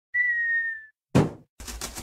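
Cartoon sound effects: a falling whistle dropping slightly in pitch for under a second, then one loud thud as a cardboard box lands. About half a second later a fast run of scratchy strokes, roughly eight a second, as a box-cutter blade saws through the top of the box.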